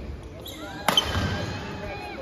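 A badminton racket striking the shuttlecock once about a second in, a single sharp crack, followed by short squeaks of court shoes on the floor.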